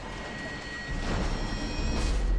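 Outro music and sound effects: a rushing noise with a few faint held high tones, growing louder about a second in.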